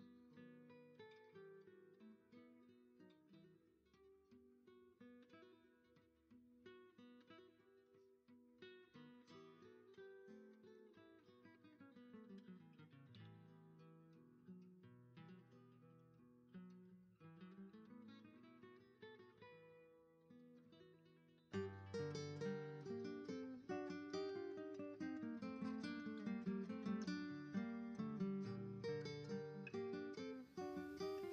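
Background acoustic guitar music with picked notes, quiet at first and much louder from about two-thirds of the way through.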